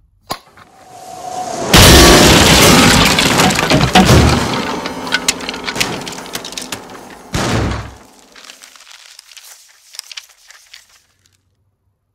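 Comic sound effect of a grand piano falling and crashing: a click and a rising rush, then a very loud crash with breaking and pitched ringing that slowly dies away, a second smaller crash about seven seconds in, and scattered rattling debris settling.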